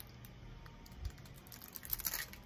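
Handling noise from a wrapped sardine tin being turned in the hands: faint, scattered light clicks and crinkles, with a soft thump about a second in.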